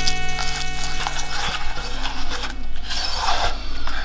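Silicone spatula stirring and scraping a wet, sticky mixture around a nonstick saucepan in uneven strokes, over soft background music.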